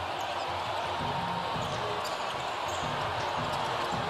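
Live game sound from a basketball court: a ball dribbling on the hardwood floor over a steady background of crowd noise.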